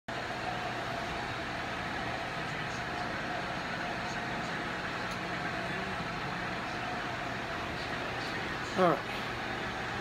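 Electric floor fan running with a steady, unchanging whir and a faint constant hum.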